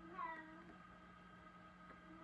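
A faint, brief animal call that falls in pitch, about a quarter second in, over a steady low hum.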